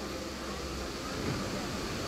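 Steady rushing noise of a shallow river running over stones.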